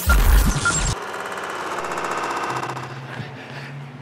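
Logo sting: a loud electronic hit with a deep rumble in the first second, then a buzzing, shimmering synth tone that slowly fades, with a low hum under it near the end.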